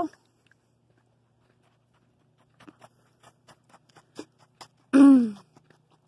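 Soft, irregular footsteps on a sandy dirt road, beginning after a couple of seconds of near quiet. A brief voice sound that falls in pitch comes near the end.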